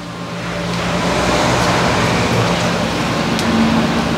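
Steady rushing noise with a low mechanical hum, swelling over the first second and then holding level.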